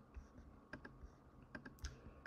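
Faint, irregular clicks of a computer mouse, several in two seconds, over near-silent room tone.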